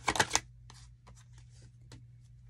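A deck of tarot cards being shuffled by hand: a quick run of card flicks in the first half second, then a few faint scattered clicks.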